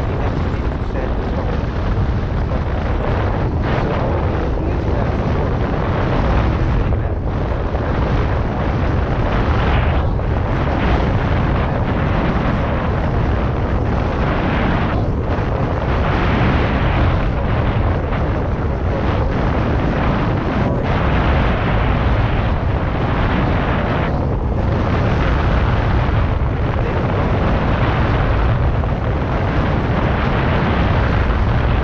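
Steady wind noise rushing and rumbling over the microphone of a rider moving along on an electric unicycle. It is loudest in the low end and has no breaks.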